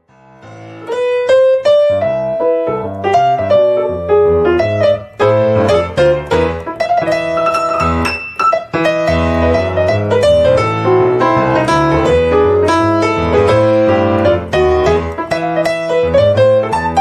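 Background piano music, a melody over low bass notes, fading in over about the first second.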